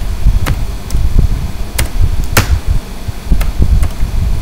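Computer keyboard keys tapped about six times, sharp separate clicks as an amount is entered, over a loud, uneven low rumble.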